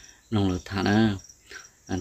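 A man's voice talking in a low pitch for about a second, with short pauses on either side.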